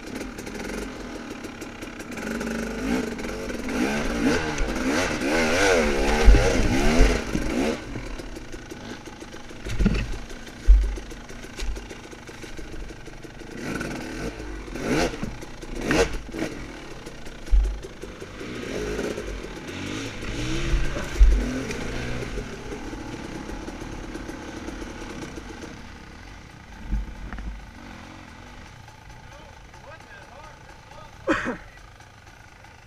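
KTM dirt bike engine running over rough, rocky trail, its pitch swinging up and down as the throttle is worked. It is loudest a few seconds in, with sharp knocks and low thumps from the bike striking rocks and ground scattered through the rest.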